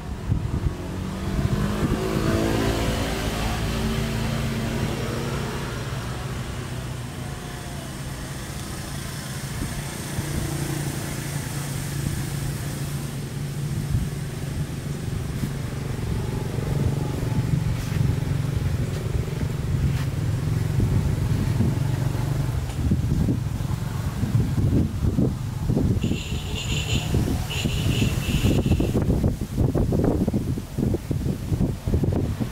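A motor vehicle engine running: its pitch rises over the first few seconds, then it holds a steady low hum. Near the end a few short, high-pitched chirps sound over it.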